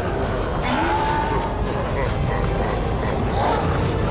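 Drawn-out, wavering moaning wails, one about a second in and another near the end, over a steady low rumble: eerie horror sound effects.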